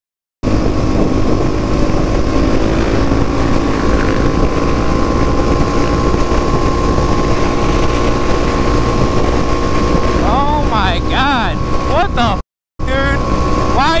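Supermoto motorcycle engine running steadily at highway cruising speed, heard from the rider's helmet camera with wind on the microphone; it starts after half a second of silence. Near the end a rider's voice comes in, broken by a brief cut to silence.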